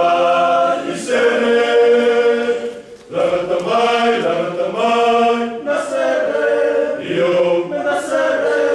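A small men's choir singing a hymn unaccompanied, holding long notes, with a brief break for breath about three seconds in.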